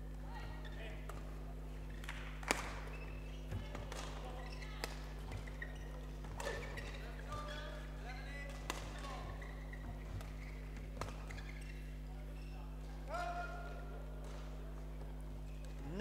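Badminton rally: a shuttlecock struck back and forth with racket hits, the sharpest about two and a half seconds in, among short squeaks of court shoes, over a steady low hum.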